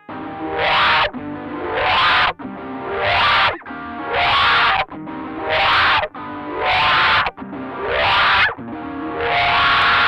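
Electric guitar played through the BOSS MS-3's wah effect: a chord struck about every second, the wah sweeping upward on each one. Near the end a chord is held.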